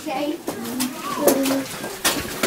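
People's voices making low, drawn-out sounds without clear words, several short bending calls in a row, with a few light clicks between them.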